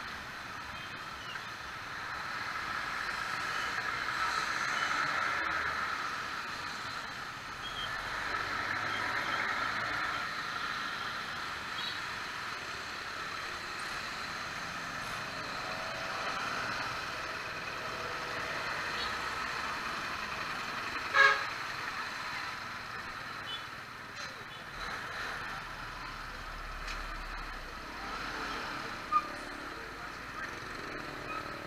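Traffic heard from a moving motorcycle in slow, wet-road traffic: steady engine and road noise, with a short, loud vehicle horn toot about two-thirds of the way through and a brief sharp spike near the end.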